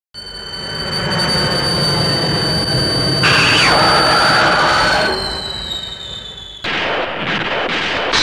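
Monster sound effect: a low rumble with a high, steady whine, then about three seconds in a loud, shrill creature screech that falls in pitch. Near the end it cuts suddenly to a new noisy burst.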